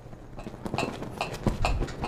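A run of short, irregular clicks and knocks, several a second, growing louder in the second half.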